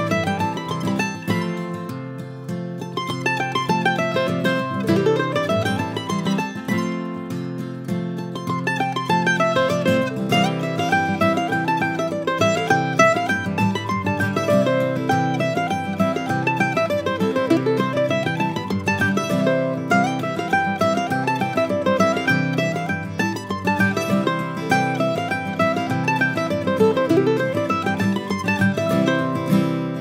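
F-style mandolin flatpicked in a brisk, continuous stream of single melody notes, playing an old-time fiddle tune with the melody shifted into different octaves.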